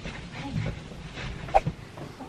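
Baby making small fussing vocal sounds, with one short sharp sound about one and a half seconds in.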